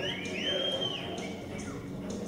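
Background music over the arena, with a few high whistle-like tones gliding up and down in the first second.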